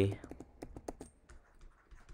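Light clicks and taps of a stylus on a tablet screen while writing: a quick run of small clicks over about the first second, then a few scattered faint ticks.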